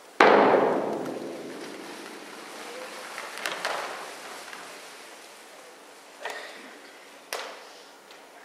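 One hard mallet strike on a large bass drum, booming and dying away over about two seconds, followed by a few fainter knocks.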